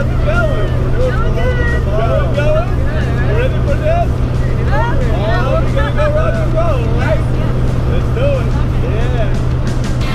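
Excited laughing and shouting voices over the steady drone of a small plane's engine heard inside the cabin.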